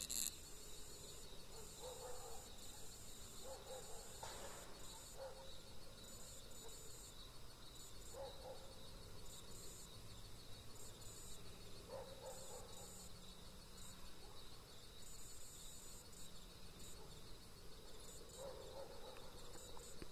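Faint night ambience of insects trilling steadily at a high pitch, one trill coming and going in spells of about a second. A few faint short sounds come from lower down.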